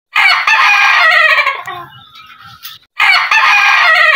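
Mini ayam ketawa (Indonesian laughing chicken) rooster crowing twice: each crow is a loud call that breaks into a trail of short falling notes, the second one starting about three seconds in.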